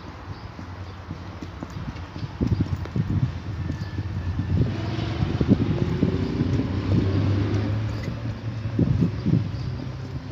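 Footsteps of heavy boots on paving stones, with a low rumble that swells through the middle and eases off near the end.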